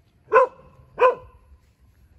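A dog barking twice, two short barks about two-thirds of a second apart.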